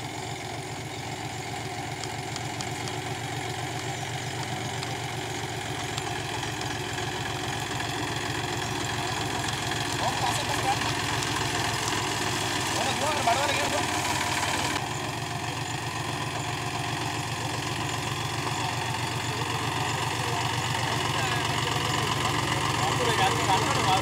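A small farm tractor's engine running steadily at low speed with an even, rapid firing pulse, growing gradually louder as the tractor approaches.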